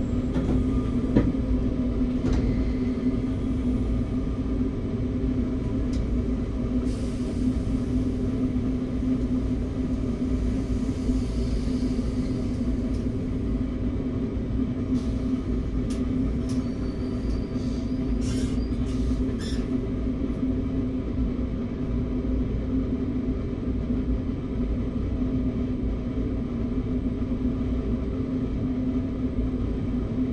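Steady low hum of a stopped RER B commuter train heard inside its driver's cab, with a few short clicks near the start and again around the middle.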